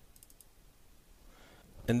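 A short run of faint, quick computer clicks about a quarter second in, over quiet room tone. A man's voice starts right at the end.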